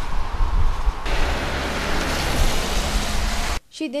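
Strong wind buffeting the camera microphone: a heavy low rumble under a rushing hiss that grows brighter about a second in, cutting off suddenly near the end.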